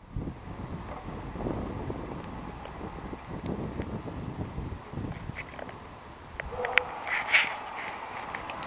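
Wind buffeting the microphone outdoors, a low, uneven rumble, with a few faint clicks and a brief tone and chirp about seven seconds in.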